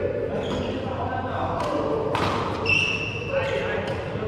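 Badminton rally in a large sports hall: several sharp racket strikes on the shuttlecock and footfalls at uneven intervals. A brief high shoe squeak on the court floor comes about two-thirds of the way in, and voices can be heard in the background.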